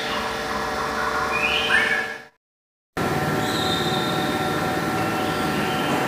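Steady mechanical hum with a few steady tones running through it and a few short high squeaks. It cuts out completely for about half a second a little after two seconds in, then resumes unchanged.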